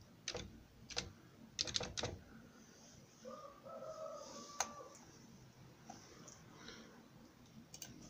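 Computer keyboard keystrokes: a quick run of sharp clicks as a name is typed, bunched in the first two seconds. One more sharp click comes near the middle, alongside a faint drawn-out sound.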